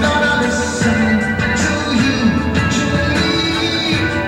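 A rock band playing live: a dense, continuous mix of instruments at a steady level, with gliding, wavering notes in the low-middle range.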